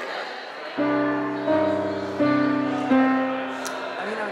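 Yamaha electronic keyboard playing four chords in turn, starting about a second in, each held for under a second, the last one fading.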